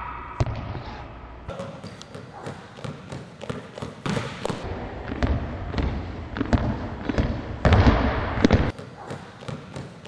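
A basketball dribbled fast and hard on a hardwood gym floor, a quick irregular run of bounces, with a louder stretch of noise about eight seconds in.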